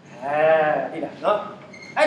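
A person's voice holding one drawn-out vowel whose pitch rises and then falls, followed about a second in by a short syllable.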